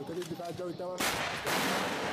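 Soundtrack of war footage of a helicopter being brought down, played back over loudspeakers: raised voices, then about a second in two loud blasts half a second apart, the second fading away slowly.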